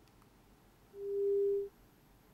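A single steady electronic beep: one pure, mid-pitched tone lasting under a second, starting about a second in and cutting off cleanly.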